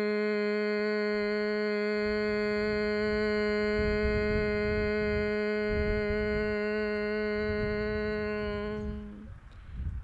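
A person humming one long, steady, closed-mouth note on a single pitch: the bee-like exhalation of Bhramari pranayama (bee breath). The hum stops about nine seconds in as the breath runs out.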